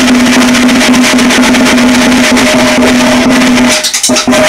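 Acoustic drum kit played hard and fast in a dense, continuous run of hits, very loud on the microphone, with a steady ringing drum tone beneath the strokes. The playing drops off briefly near the end.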